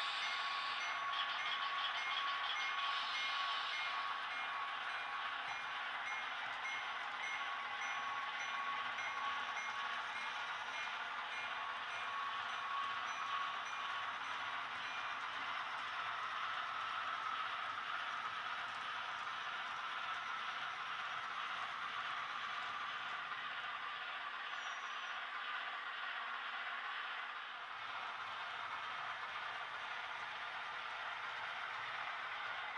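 HO scale model freight cars rolling along model railroad track: a steady metallic rolling hiss with faint ringing tones, easing off slightly near the end.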